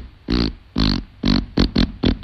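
A cartoon gorilla's voice effect: a run of short, pitched grunts, about six in two seconds, with three quick ones close together near the end.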